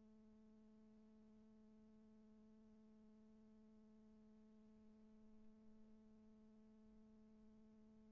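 Near silence: a faint, steady low hum, one unchanging tone with its overtones.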